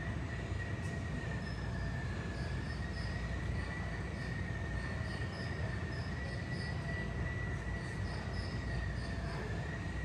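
Aircraft jet engine running on the apron, heard through the terminal glass: a steady high whine that wavers slightly in pitch over a low rumble.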